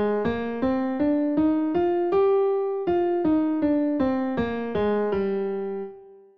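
Piano playing the G Phrygian scale one note at a time, about three notes a second. It climbs stepwise to the top G, holds it briefly about two seconds in, then steps back down and ends on a held low G that is cut off just before the end.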